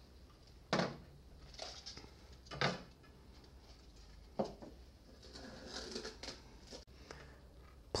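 Black plastic paper spools of a photo printer's paper roll being handled: three soft knocks about two seconds apart as the spools are pulled off the roll and set down, with faint rustling between.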